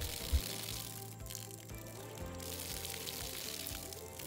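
Water pumped from a rain barrel jetting out of a spigot and splashing onto mulch, a steady hiss, under background music with sustained notes.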